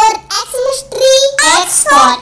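A child's high voice singing in short phrases.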